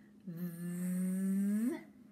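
A woman drawing out a voiced 'th' sound: a buzzing hum with air hissing past the tongue, held for about a second and a half and rising in pitch as it ends.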